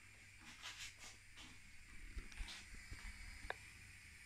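Faint handling noises of a camera stand being set up: small scattered clicks and rustles, with one brief high tick about three and a half seconds in.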